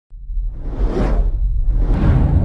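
Whoosh sound effect of a news channel's logo intro, swelling to a peak about a second in and fading, over a deep, steady low rumble. A second whoosh begins at the very end.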